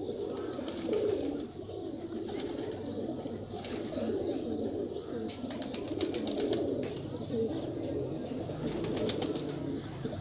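Domestic pigeons cooing steadily in the background, with a few light clicks around the middle.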